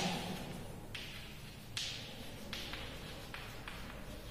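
Chalk writing on a chalkboard: about six short, scratchy strokes and taps as letters are written, over a steady low hum.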